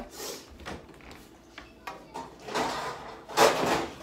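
Rummaging in a low kitchen drawer: a few knocks, then the drawer sliding and a metal muffin pan scraping out from among other bakeware, loudest near the end.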